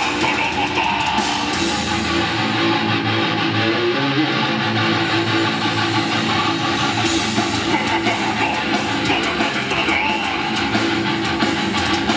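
A heavy metal band playing live through a venue PA: distorted electric guitars with bass and drums. Between about two and seven seconds in, the cymbal sizzle and the deepest bass drop back and the guitars carry the song, before the full band returns.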